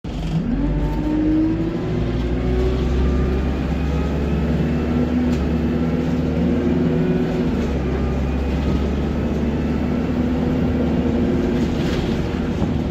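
Diesel engine of an Alexander Dennis Enviro 200 single-decker bus heard from inside the saloon as it accelerates: the engine note rises over the first second and a half, then runs steadily under load.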